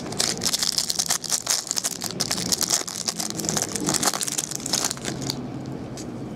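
Trading cards and their pack being handled by hand: a dense run of crinkling and small clicks that settles down about five seconds in.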